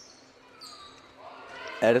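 Basketball play on a hardwood gym floor: a few short, high sneaker squeaks over a low hum of the gym.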